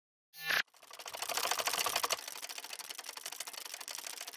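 Logo-intro sound effect: a short burst of noise that swells and cuts off about half a second in, then a rapid run of fine mechanical clicks, loudest in its first second and quieter after about two seconds in.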